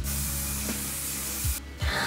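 Aerosol hairspray spraying in a long hissing burst that stops about one and a half seconds in, with another spray starting just before the end.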